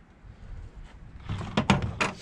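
Handling noise from a wrench working the oil drain plug on a small snowblower engine: rubbing that builds into a quick cluster of knocks about a second and a half in.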